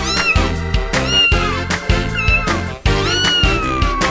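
Cartoon cat meowing four times over upbeat background music with a steady beat. The first three meows are short and the last is long and drawn out, falling slowly in pitch.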